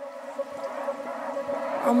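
Background music fading in: two held notes swell steadily louder, and a voice starts to sing near the end.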